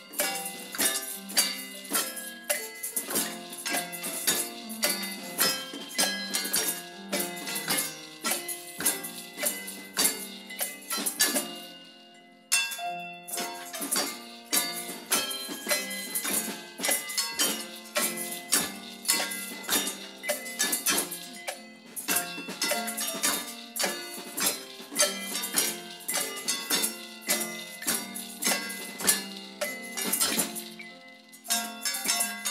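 Masonry trowels hanging from a rack, struck with a small mallet, ring out a melody in chime-like notes, accompanied by tambourine jingles on a steady beat. There is a brief break in the playing near the middle.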